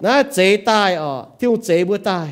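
A man preaching a sermon, speaking continuously in the Mien language.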